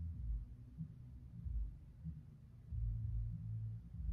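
Low rumble and hum with no clear source. It is louder at the very start and again near the end, with a few soft low thumps.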